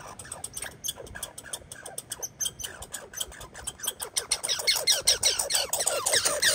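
American red squirrel chattering: a rapid run of short falling notes, several a second, growing louder over the last two seconds.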